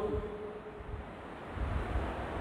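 A short pause in a man's speech: a steady low hiss and rumble of background noise on a clip-on microphone, with the faint tail of his last word fading out in the first second.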